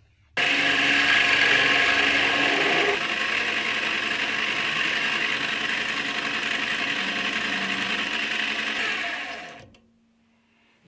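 Metal lathe running while a small twist drill is fed into the end of a spinning stainless steel rod, drilling a hole in its face. The machine noise starts suddenly, steps down slightly a few seconds in, and fades out near the end.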